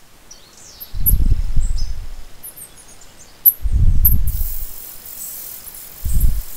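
European robin nestlings cheeping thinly and high, swelling from about four seconds in into a steady high hissing begging chorus as a parent comes with food. Two loud low rumbles, about a second in and again near the middle, are the loudest sounds.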